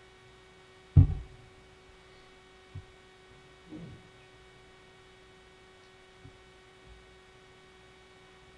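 Steady electrical hum from the sound system in a quiet room, broken by one loud thump about a second in, likely a bump on a table microphone, and a few faint knocks later on.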